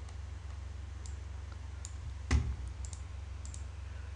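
Computer mouse clicking a few times as elements are selected and dragged, with one louder knock a little past halfway, over a steady low hum.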